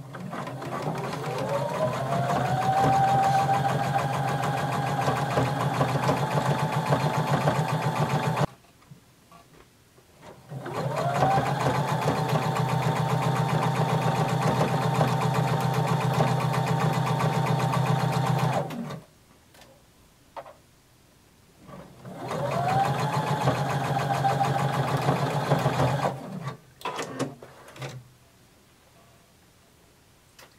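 Electric sewing machine stitching a seam in three runs. Each run opens with a rising whine as the motor speeds up, then holds steady; the runs stop about 8 seconds in, about 19 seconds in and about 26 seconds in. Small clicks fall in the pauses.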